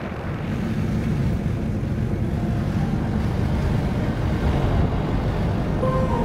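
Steady low rumble of a vehicle driving, with wind noise on the microphone.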